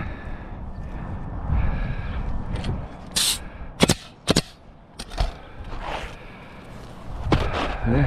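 Pneumatic coil roofing nailer firing twice, about half a second apart near the middle, driving nails through asphalt shingles, just after a brief hiss. Rustling and scraping of shingles being handled before and after.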